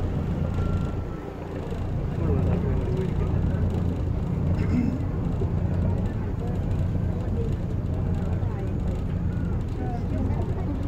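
Engine of a passenger tour boat running steadily underway, a low even drone that dips briefly about a second in, with passengers talking faintly in the background.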